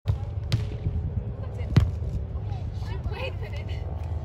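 Hands striking a volleyball in a rally: a sharp slap about half a second in, then a louder one near two seconds, over a steady low rumble.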